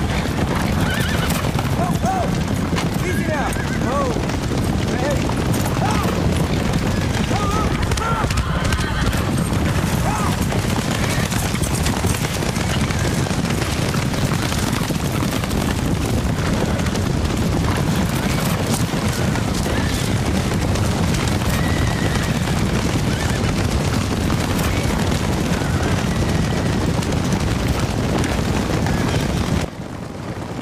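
A herd of horses stampeding: the constant rumble of galloping hooves, with repeated neighs and whinnies, most of them in the first third. It cuts off suddenly just before the end.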